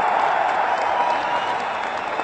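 A large audience applauding: dense, steady clapping that eases slightly toward the end.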